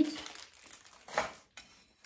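Packaging rustling as a plastic bath shelf is unpacked and handled, with one brief louder noise about a second in.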